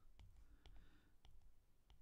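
Near silence with a few faint clicks of a stylus tapping on a tablet screen while handwriting.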